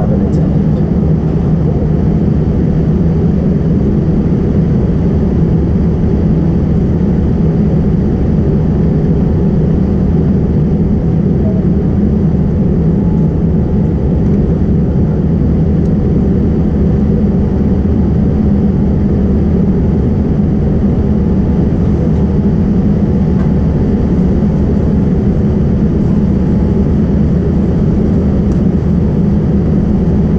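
Steady low hum inside the cabin of a Boeing 787 airliner standing still at the gate, even throughout.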